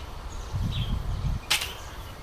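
Ring mail shirt being handled and set down, with one sharp, brief metallic chink about one and a half seconds in over a low rumble.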